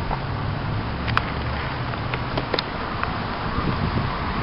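City bus engine idling at a stop: a steady low hum, with wind blowing on the microphone.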